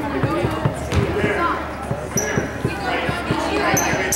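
Basketball bouncing on a hardwood gym floor in an echoing gym, with spectators' voices throughout. Short high shoe squeaks come about two seconds in and again near the end.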